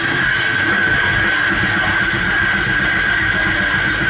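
Live heavy metal band playing loud, with distorted electric guitars and a full drum kit pounding without a break, heard close up from beside the drum kit.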